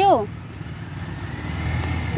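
Low engine rumble that grows louder, with a faint high whine joining it near the end.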